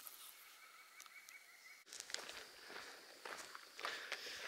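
Faint footsteps of a hiker walking on gravel, starting after an abrupt cut about two seconds in. Before the cut there is only a faint steady high tone.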